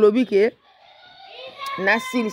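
A person's voice: a short phrase at the start, a brief pause, then another phrase starting about a second and a half in, with a steady high tone held underneath.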